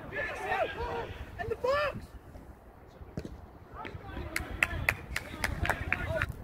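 Footballers' shouts carrying across an outdoor pitch: raised, high-pitched calls in the first two seconds. After a lull, a quick run of short sharp calls or claps comes near the end.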